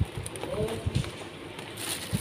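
A dove cooing faintly in the background, with soft low knocks and brief rustles of plastic food containers being handled and pressed on a counter.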